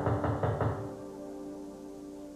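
A quick run of knocks on a door, ending about a second in, over a held background music chord.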